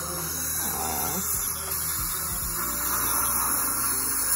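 Dental handpiece running during a teeth cleaning, giving a steady high hiss of air and water spray that starts suddenly.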